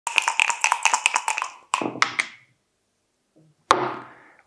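Dice rattling inside a dice cup being shaken, about eight clicks a second, followed by the dice tumbling out onto a backgammon board with a few clattering clicks. A single sharp knock comes near the end.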